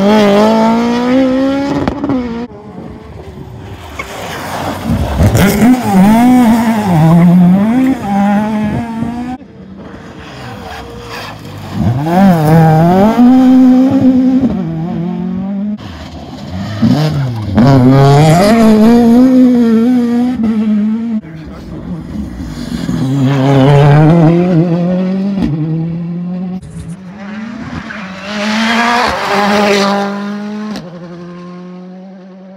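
Rally cars at full competition pace passing through a bend one after another: engines revving hard, the pitch rising and dropping with each lift-off and gear change, with tyre squeal as they slide through the corner. The loud passes come again and again, with quieter stretches between as each car drives away.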